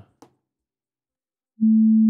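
Near silence, then about one and a half seconds in a pure sine tone at 220 Hz (the A below middle C) starts abruptly and holds steady, sounding as a single starting note.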